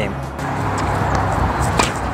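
A steady rushing noise with music under it, then a single sharp tennis ball strike off the racket strings near the end.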